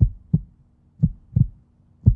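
Heartbeat sound effect: two low double thumps, lub-dub, about a second apart.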